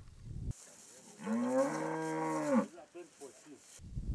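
A cow mooing: one long low call of about a second and a half that rises in pitch at the start and falls away at the end.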